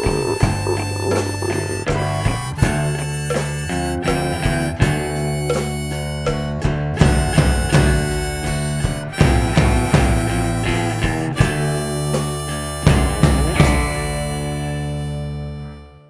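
Instrumental ending of a blues-country song: blues harmonica playing over electric guitar, bass guitar and drums. It closes on a held chord that fades out near the end.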